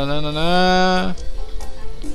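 A man's drawn-out vocal "óóó" of interest, one long held note rising slightly in pitch, stopping about a second in. Background music plays under it.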